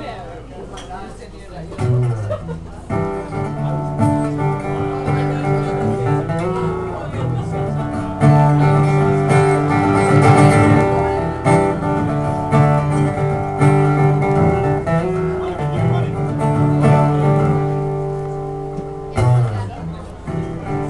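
Acoustic guitar playing an instrumental passage of ringing chords that change every second or two. It starts soft, builds after a few seconds and eases off near the end.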